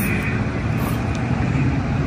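Steady low background rumble outdoors, with no distinct events.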